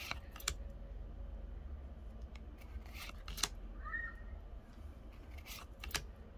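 Pokémon trading cards being slid and flicked one behind another in the hands, giving about six short, crisp snaps of card stock spread out over a few seconds.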